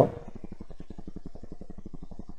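A steady low buzz with a fast, even pulse: constant background noise in the recording.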